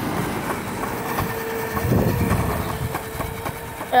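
Delivery van's engine running close by, its low rumble swelling about two seconds in, under a steady whine, with wind on the microphone.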